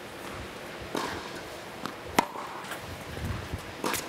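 Tennis ball struck by racquets and bouncing during a rally on an indoor hard court: a few sharp pops spaced one to two seconds apart, the loudest about two seconds in.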